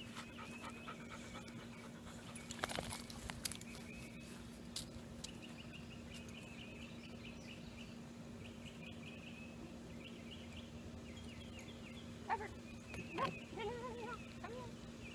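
A dog whining faintly in a few short pitched notes near the end, after a few knocks about three seconds in.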